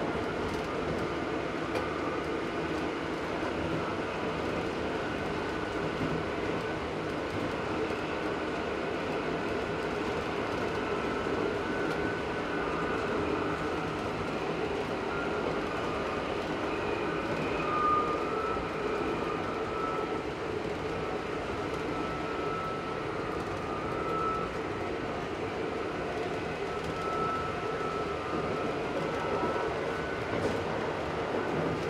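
Narrow-gauge diesel railcar under way, heard inside the driver's cab: steady engine and running noise of the wheels on the track. A thin high whine comes and goes in the second half.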